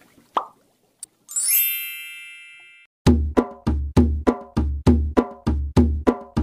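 Logo-sting sound effects: a short plop and a click, then a rising, shimmering chime that rings for about a second and a half. About halfway through, a percussive music track comes in with a heavy beat of about three hits a second.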